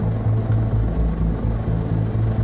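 Steady low drone of an aircraft engine from aerial news footage, played back through a video call's shared screen.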